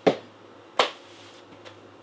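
A glass jar set down on a hard surface: two short, sharp knocks about three-quarters of a second apart.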